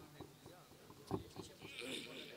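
A faint, indistinct voice with a few soft clicks.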